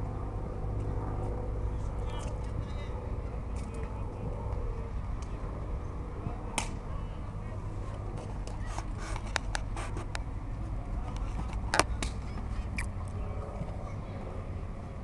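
Outdoor ambience at a youth football match: a steady low rumble with faint distant voices, and scattered sharp knocks, a cluster in the middle and the loudest one near the end.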